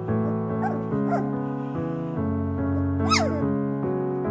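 A 2.5-week-old Golden Retriever/Flat-Coated Retriever cross puppy squeaking and whimpering a few times, the loudest a high falling squeal about three seconds in, over background music.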